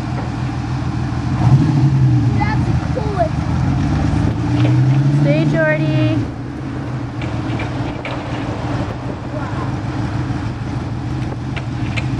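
Lamborghini Countach 5000 QV's downdraft-carburetted V12 running at low speed as the car rolls in. Its revs rise and fall twice, about one and a half and four and a half seconds in, then settle to a steady, lower note about six seconds in.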